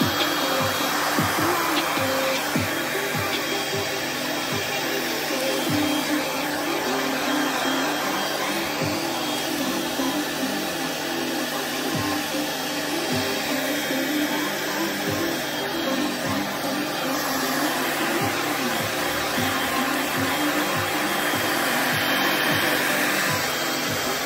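Handheld hair dryer blowing steadily, with music with a beat playing underneath.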